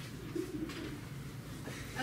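A brief, soft, low murmur from a person's voice about half a second in, over faint rustling as paper puppets are handled.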